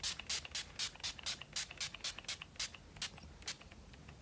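Pump-mist bottle of Urban Decay All Nighter setting spray being pumped in quick short hissy puffs, about five a second, some twenty in all, stopping shortly before the end.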